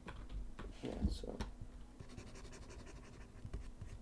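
Stylus scratching and tapping on a graphics tablet in short, irregular strokes with small clicks, busiest about a second in.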